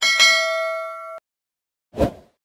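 A bell-chime 'ding' sound effect for the notification bell icon being clicked. It rings once and fades for about a second before cutting off abruptly, and a short thump follows near the end.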